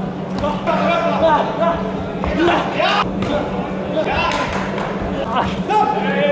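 Voices shouting and calling around a boxing ring in a large echoing hall, with several sharp thuds of gloved punches landing.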